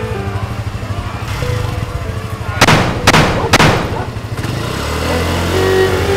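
Three pistol shots fired in quick succession about halfway through, roughly half a second apart, over background music.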